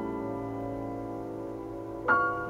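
Steinway grand piano: a chord held with a low bass note under it, slowly dying away with no new notes struck.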